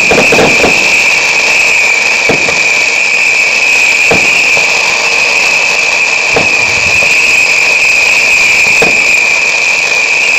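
Firework fountains spraying sparks, a steady loud hiss with a high whine through it, and sharp pops every couple of seconds, several close together at the start.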